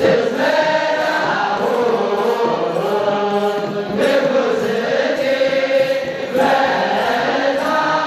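Eritrean Orthodox liturgical chant: a large group of clergy and deacons singing together in long held, bending notes, with kebero drums beating along about twice a second.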